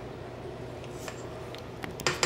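Faint steady room noise, with a couple of soft scrapes and ticks of a silicone spatula working creamed cream cheese around the side of a stainless-steel mixer bowl.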